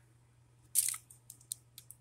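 A brief rustle followed by a few light clicks as small plastic Bakugan toys are handled and pulled from a fabric bag.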